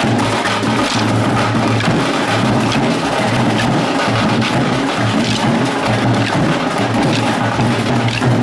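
Percussive folk music with drums and sharp wooden clacks, as in a kolattam stick dance where the dancers strike their wooden sticks together in rhythm.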